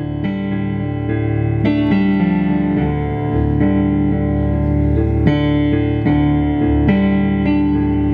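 Piano played slowly: sustained chords and single notes, a new note or chord about every half second to second, swelling in over the first two seconds.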